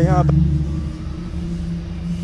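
A vehicle engine's steady low rumble, just after a man's voice breaks off at the start.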